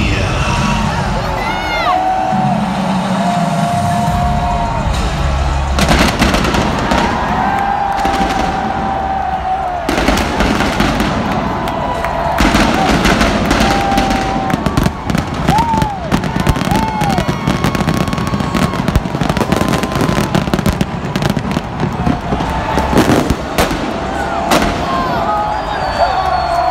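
Stadium fireworks and pyrotechnic blasts: repeated sharp bangs that start about six seconds in and grow dense after about ten seconds, with a big blast near the end. Underneath is music with a sustained sung melody over the stadium PA.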